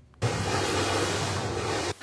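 Steady rushing noise of wind and sea water from night footage shot at sea, with a low steady hum underneath. It starts abruptly and cuts off just as abruptly.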